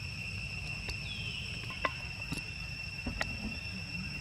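Insects in the forest trilling in one steady high-pitched drone, with a few small sharp clicks and rustles in the leaf litter close by.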